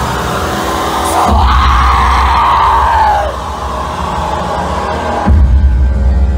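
Live dark experimental music: a loud low drone under a woman's screamed vocal that slides downward in pitch for about two seconds, starting about a second in. The low end drops out briefly and then surges back in loudly near the end.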